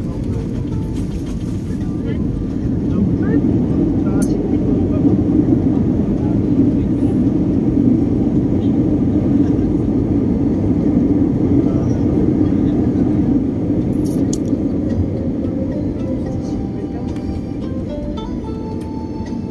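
Jet airliner cabin noise while the aircraft rolls on the ground: a steady low rumble that swells a few seconds in and eases off near the end as the jet slows.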